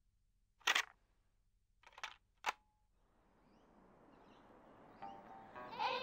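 Three short, sharp bursts of noise within the first two and a half seconds, then a background sound that swells up gradually, with birds chirping and music coming in near the end.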